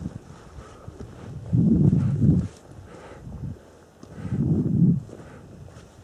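Wind buffeting the camera microphone in two strong gusts on an open summit, with footsteps crunching on loose rock between them.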